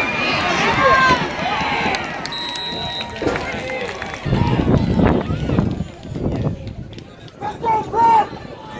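Voices of players and spectators calling out along a football sideline, with a short, steady, high whistle blast a little over two seconds in, from a referee's whistle. A stretch of rumbling noise follows just after the middle.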